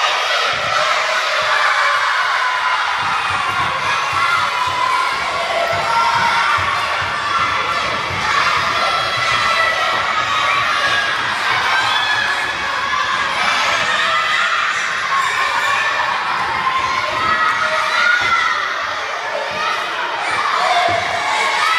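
Many children shouting and cheering at once, a steady, unbroken din of voices in a gym hall.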